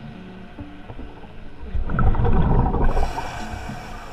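Scuba diver breathing through a regulator underwater: a loud bubbling exhalation near the middle, then a hissing inhalation toward the end.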